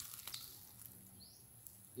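Quiet outdoor ambience, close to silence, with a steady low hum, a few faint ticks near the start and one short, faint rising bird chirp a little over a second in.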